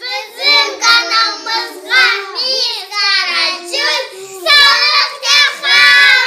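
Several young girls singing together in high voices.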